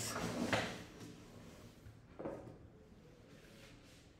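A short rustle of movement, then a single knock or bump about two seconds in, followed by faint room tone.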